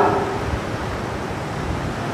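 Steady hiss with a low rumble, with no speech: the background noise of a microphone in a large room. A man's voice dies away in echo right at the start.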